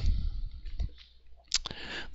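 Pen writing on paper: faint scratching strokes with a few small ticks as the pen touches down.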